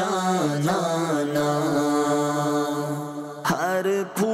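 A voice singing a devotional naat in long held notes that bend and waver, with a short breath about three and a half seconds in.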